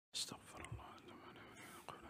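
Faint whispering close to a desk microphone, with a few soft clicks from the microphone being handled.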